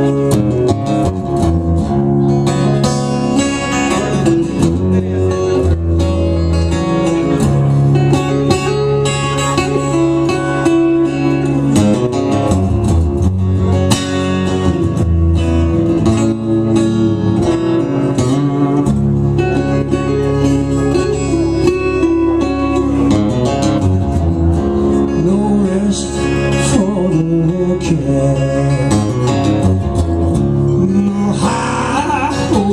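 Two guitars playing together live, one a nylon-string acoustic-electric guitar, in a steady instrumental passage of plucked and sustained notes.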